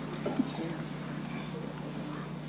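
Room tone with a steady low hum, faint murmured voices, and two light knocks a little after the start.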